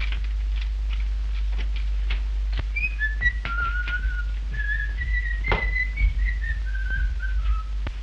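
A man whistling a short tune from about three seconds in, the notes stepping about and falling toward the end, over footsteps tapping about twice a second.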